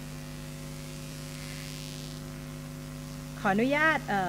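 Steady electrical mains hum, several even tones held without change, picked up through the microphone and sound system; a woman starts speaking near the end.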